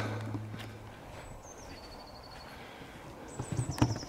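Footsteps on a leaf-covered woodland path, with thin high whistled bird calls: one stepping down in pitch in the middle, another near the end. A low steady hum fades out about a second in.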